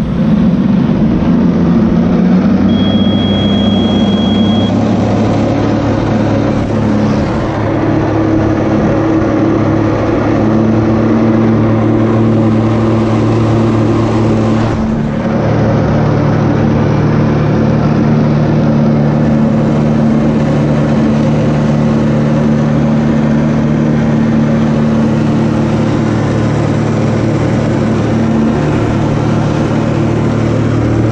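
Personal watercraft engine running at high, steady revs to pump water up the hose to a flyboard, with rushing water and spray underneath. The engine note shifts with throttle changes about two seconds in and again about halfway through.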